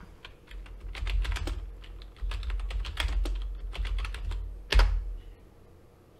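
Typing on a computer keyboard: a quick, uneven run of key clicks with low thuds underneath. One louder keystroke comes just before the typing stops about five seconds in.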